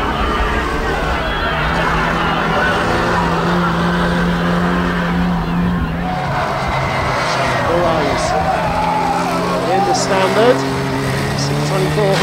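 Several banger-racing cars' engines running together in a steady drone, with revs rising and falling in the second half as the cars push and ram each other.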